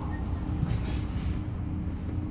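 Steady low hum of an Enviro400EV electric double-decker heard from inside the upper deck while the bus stands still, with a faint hiss above it.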